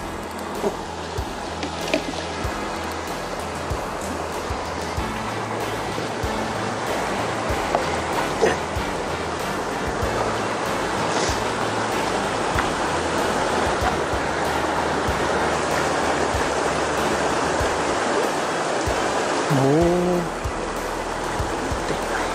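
Shallow mountain river rushing over a rocky riffle, a steady noise throughout, with background music underneath.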